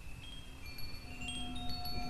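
Chimes ringing softly: a scatter of high, clear tones that each ring on, with a lower held tone coming in about halfway through.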